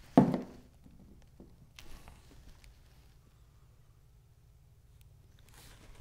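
A single thump of a plastic glue bottle set down on the cutting mat, followed by a few faint taps and rustles of small paper pieces being handled.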